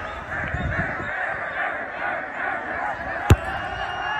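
A crowd of onlookers chattering and calling out, then a single sharp thump of a football being struck for a free kick about three seconds in.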